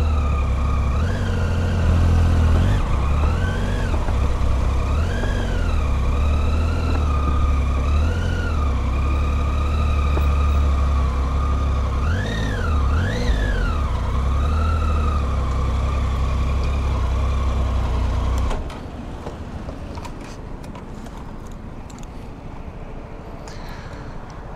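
Triumph Tiger 800's three-cylinder engine running at low speed, its revs swelling up and down in short rises as the bike is ridden slowly and maneuvered. The engine cuts off suddenly about three-quarters of the way through, leaving a quieter background with a few light clicks.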